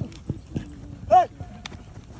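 Sideline voices with one loud shouted "Hey" about a second in, over a few scattered thumps of players' feet running on artificial turf.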